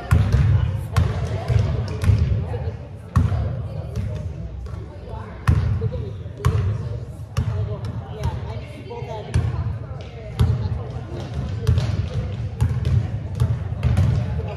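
Basketballs being dribbled on a hardwood-style gym floor: sharp, irregular thuds about once or twice a second, echoing in a large gymnasium, under a background of indistinct voices.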